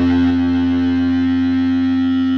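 Stratocaster-style electric guitar played through distortion, holding a chord that rings on steadily without a new strike.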